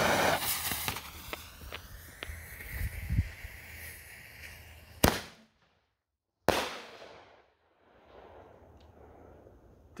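A mini canister firework shell fired from its fiberglass tube. A torch lighter's jet hisses as it lights the fuse, then a few seconds of lower hiss with small crackles. A sharp bang comes about five seconds in, and about a second and a half later a second bang with a trailing echo as the shell breaks.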